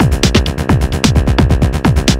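Techno played live on hardware drum machines and synthesizers: a kick drum that drops in pitch on each hit, about four hits a second, with hi-hat ticks and sustained synth tones.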